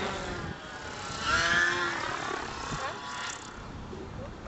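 Distant nitro-engined RC helicopter (Thunder Tiger Raptor 50) flying high overhead. Its engine whine rises and falls in pitch, under a haze of wind noise.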